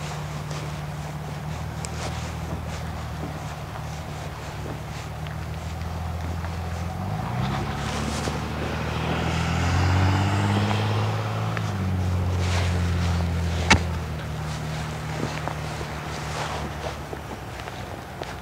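A motor vehicle engine running steadily, its pitch rising about seven seconds in and settling back a few seconds later. Faint hoofbeats of a cantering horse on soft arena footing, and a single sharp click near the end.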